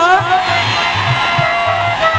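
Live Haryanvi folk stage music: a dholak keeps an even beat under a held melody. A sung line trails off just as the music begins.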